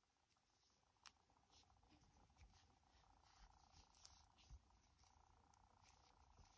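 Near silence, with faint rustles and a small click about a second in from hands pulling yarn and a needle through crocheted work.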